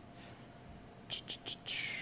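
Quiet room tone, then a man's faint whispered muttering in the second half: a few short hissing sounds and a longer 'sss' near the end.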